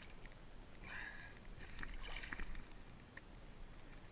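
Soft water splashing and sloshing as a muskie moves in a landing net held in the water beside a boat, with a few short faint clicks.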